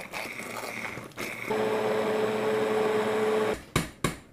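Hand-held immersion blender puréeing a pot of chunky roasted carrot and squash soup: quieter at first, then a louder steady motor whir with one clear tone for about two seconds before it stops. A short knock follows just before the end.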